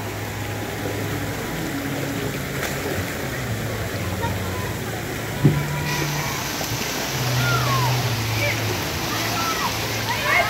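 Steady rush and splash of water from a water-park pool and its slides, with background voices of children and a single knock about five and a half seconds in.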